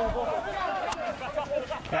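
Several men's voices calling and shouting over one another, players' on-field calls during a rugby league match.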